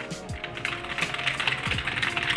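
Rapid typing on a computer keyboard, a quick run of clicks starting about half a second in, over background music.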